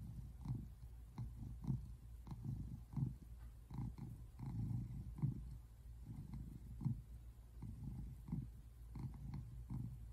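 Brown tabby American shorthair cat purring in a low rumble that swells and fades in a steady rhythm, roughly every half second.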